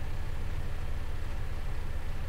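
Steady low hum with a faint even hiss: background noise of the recording, with no other event.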